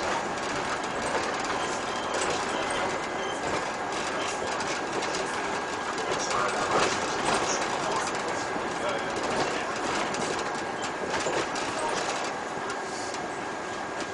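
Cabin of a city bus driving along a street: steady road and engine noise with constant rattling and clattering from the interior fittings, over a faint steady whine.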